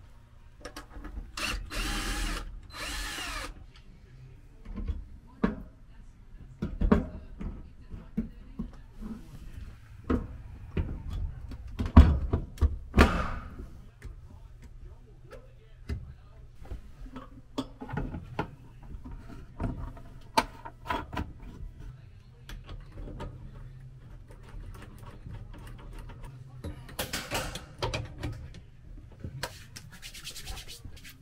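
A cordless drill running in short bursts as a shower fixture is screwed to a cedar wall panel, with scattered clicks and knocks of the metal rail and brackets being handled and fitted. The loudest knock comes about twelve seconds in.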